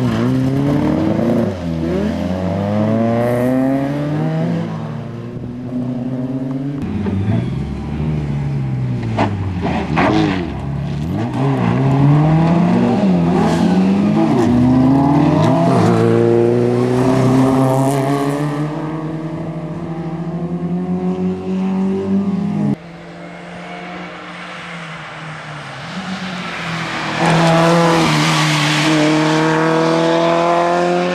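Historic rally cars, among them a first-generation Volkswagen Golf, accelerating hard on a special stage: the engine note climbs and falls back again and again as they change up through the gears. About two-thirds of the way through, the sound cuts suddenly to a quieter, steadier engine, and near the end another car accelerates hard.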